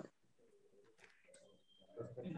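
Near silence, with a faint, low, wavering cooing call in the background, like a dove's.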